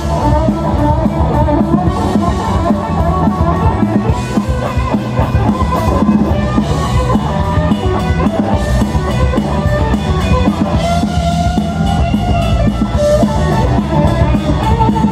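Live rock band playing an instrumental passage: electric guitar over electric bass and drum kit, loud and continuous.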